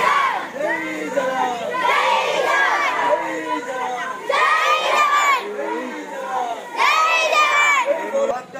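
A crowd of schoolchildren shouting together as they march, rising into loud group shouts about every two to two and a half seconds, with more voices carrying on between them.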